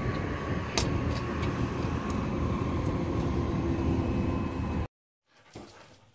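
Steady low rumble of a motor vehicle running close by, with a single sharp click a little under a second in. The sound stops abruptly about five seconds in.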